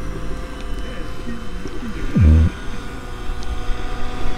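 A steady low hum and rumble with a few faint, steady whining tones. A short voice sound, falling in pitch, comes about two seconds in.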